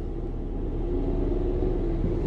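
Steady low rumble of a car heard from inside its cabin, with a faint steady hum over it.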